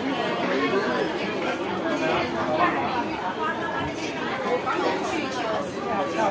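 Indistinct chatter of many voices talking at once in a busy shop.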